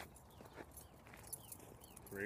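Near silence: faint outdoor ambience with soft, scattered footfalls on a dirt path.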